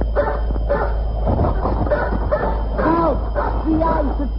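Dog barking and yipping in a quick run of short, arching calls that come thicker in the second half, over a steady low hum.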